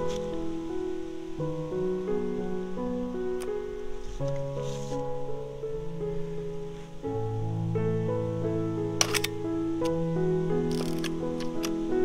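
Background music of slow, sustained keyboard chords, with mechanical clicks from a Mamiya RB67 medium-format film camera over it as the camera is worked for a shot: a sharp cluster of clicks about nine seconds in and a few more near eleven seconds.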